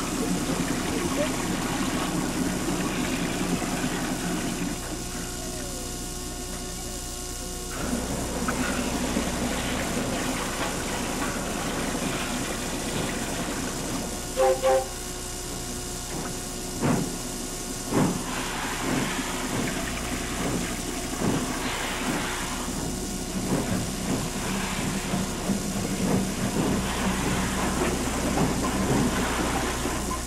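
Train sounds: a locomotive and its carriages running, with a steady rumble and scattered clanks and knocks, mostly in the second half. A brief pitched tone sounds about halfway through, and people's voices are heard in the background.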